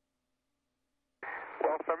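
Silence, then about a second in the space-to-ground radio link cuts in with a short rush of noise, and a crew member starts to answer. The voice has the thin, narrow-band sound of the downlink.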